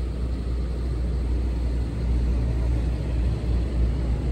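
Steady low rumble of heavy vehicles: a tow truck's engine running and highway traffic.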